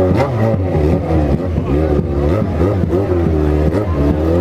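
Yamaha XJ6's inline-four motorcycle engine running at low speed, its revs rising and falling repeatedly with the throttle.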